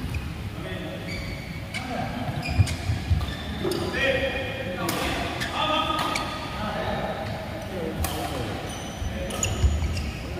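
A badminton rally in an indoor hall: sharp racket strikes on the shuttlecock every second or two, heavy footfalls thudding on the court, and players' voices calling.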